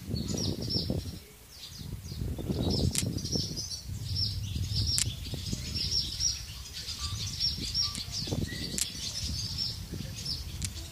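A nesting colony of swallows twittering, a dense run of high chirps that never lets up. A low rumble runs underneath, with a few sharp clicks.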